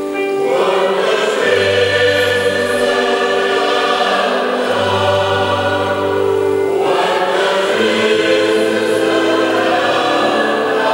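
Mixed choir of men's and women's voices singing sustained chords in harmony, accompanied by acoustic guitars and an electronic keyboard, with held low bass notes underneath.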